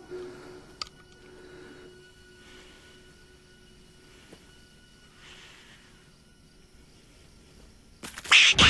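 Quiet film soundtrack: a faint, sustained musical drone held under the scene, with one sharp click about a second in and two soft hissing swells later on.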